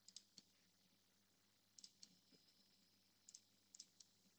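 Faint computer mouse clicks, several of them, some in quick pairs, as edges are picked one by one in the CAD program, against near silence.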